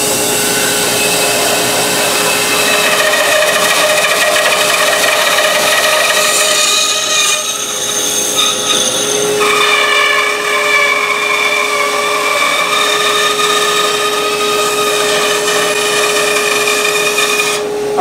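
Bandsaw running and cutting through a hard black poison wood (chechen) guitar neck blank: continuous cutting noise with a steady whine over it, whose tone changes about nine seconds in.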